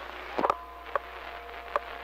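CB radio speaker giving out a steady hiss of open-channel static, with faint steady tones under it and three short pops or blips, about half a second in, at one second and near the end.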